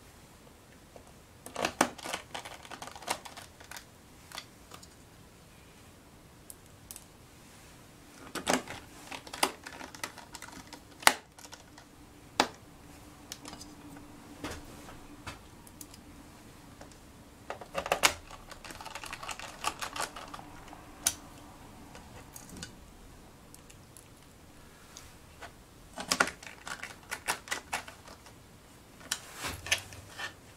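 Small metal screws and a screwdriver clicking and tapping against a laptop's plastic bottom case and a metal parts tray, in several short bursts of clicks with pauses between.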